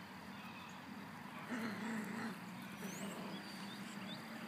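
A puppy gives one short low growl, a wavering sound under a second long about a second and a half in, while tugging at a loose fabric trouser leg.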